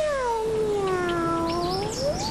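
A single long, drawn-out meow that slides down in pitch and then rises again at the end.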